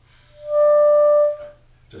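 Clarinet playing a single held note: it swells in, holds steady for about a second, then tapers away.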